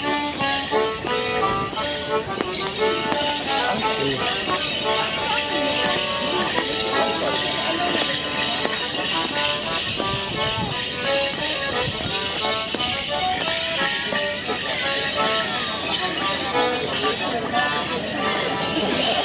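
Accordion playing a traditional Morris dance tune, with the jingling of the dancers' leg bells over it.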